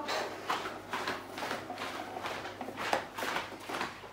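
Scattered faint rustles and light clicks of things being handled on a worktable.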